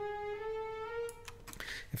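Sampled orchestral string notes from a HALion 6 software sampler playing one after another at a soft velocity, each a step higher than the last, the run fading out about one and a half seconds in.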